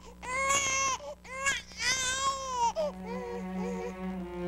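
A baby crying: three loud, high-pitched wailing cries in quick succession, the third the longest, trailing off into softer sounds in the last second.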